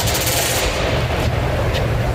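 Pneumatic rivet gun hammering in a rapid rattling burst, loudest in the first half second, over the steady din of an aircraft assembly floor.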